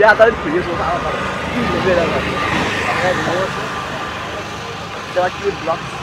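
A road vehicle passes, its engine and tyre noise swelling to a peak about halfway through and then fading. People are talking over it at the start and again near the end.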